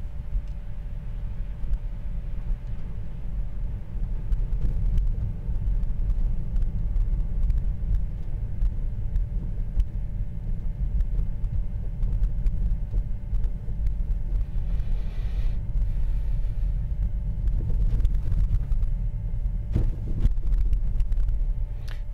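Steady low rumble of tyre and road noise inside a Tesla Model 3's cabin as it drives slowly over snow-covered streets on its stock 18-inch all-season tyres, with a faint steady tone above it.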